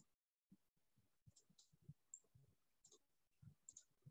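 Near silence, with a few faint, scattered clicks and soft knocks.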